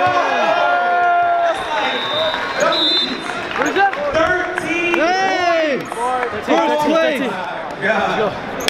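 Several men shouting and whooping without clear words, cheering over crowd noise, with one held call about a second in.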